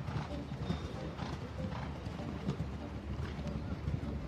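Hoofbeats of a horse cantering on a sand arena, a string of dull irregular thuds over a steady low rumble.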